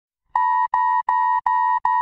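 Electronic alert beeps: five identical short, steady, mid-pitched tones in quick succession, about three a second, starting a moment in.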